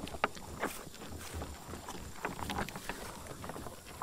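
American bison chewing range cubes, with irregular close-up crunching and clicking as they eat the cubes off the board.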